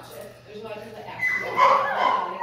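A dog's high-pitched cries, building through the second half and loudest about a second and a half in.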